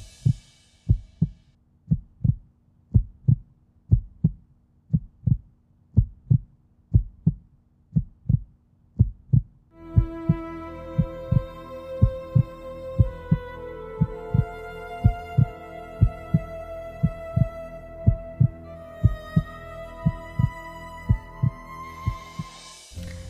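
Heartbeat sound effect, a steady lub-dub beat about once a second. About ten seconds in, slow music with long held tones comes in over it and continues with the beat.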